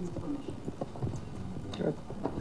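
Faint voices away from the microphone, with scattered light clicks and taps.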